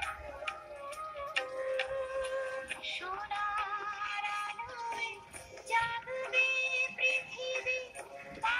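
Recorded song: a high singing voice holds long, wavering notes over instrumental accompaniment, with light ticking percussion.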